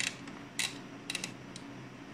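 A few sharp detent clicks from a rotary switch knob on an HP analog oscilloscope being turned by hand, about half a second apart, with two close together near the middle. Under them runs a steady low hum from the test bench.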